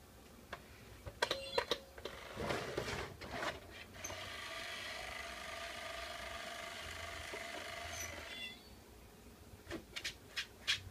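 A few light clicks and knocks, then the battery-powered cat coin bank's small motor whirring steadily for about four and a half seconds as its mechanism runs.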